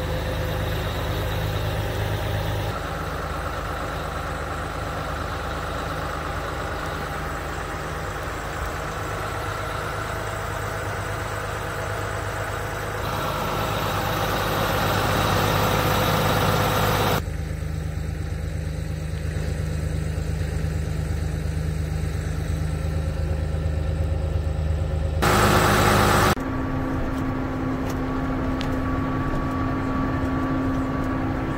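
John Deere 7290R tractor's diesel engine running steadily, heard in several shots joined by abrupt jumps in level and tone. It is loudest around the middle, when it is heard up close.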